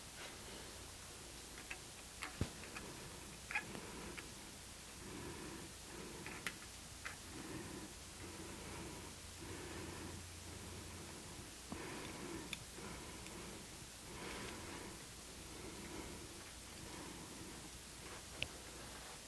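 Faint, sparse clicks and light taps of small metal parts being handled as a sewing machine's rotating hook assembly is refitted, over a soft low pulsing background sound.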